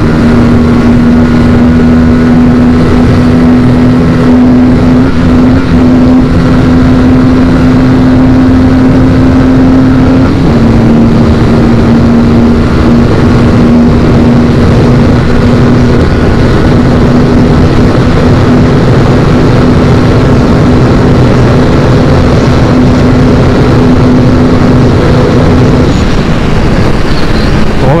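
Aprilia RS 457's parallel-twin engine running hard at full throttle near its top speed, a steady high-revving drone under loud wind rush on the helmet microphone. The engine note dips slightly about ten seconds in and falls away a couple of seconds before the end as the throttle is eased.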